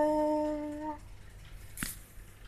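A woman's voice holding one long, steady final note, which fades and stops about a second in. A short knock follows near the end.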